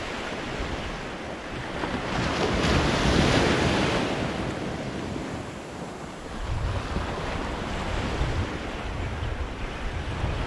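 Small waves breaking and washing up the sand at the shoreline, one wash swelling loudest about two to four seconds in. Wind buffets the microphone, mostly in the second half.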